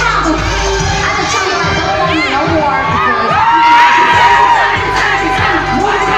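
Concert crowd cheering and shouting with high-pitched screams over a bass-heavy live track. The cheering swells to its loudest a little past the middle.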